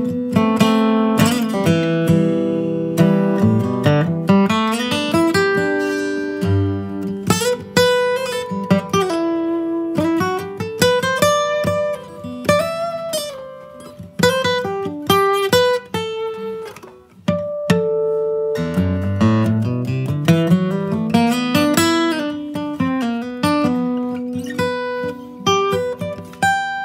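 Steel-string acoustic guitar played with a pick: an improvised single-note solo, with several notes sliding smoothly up and down in pitch between picked notes.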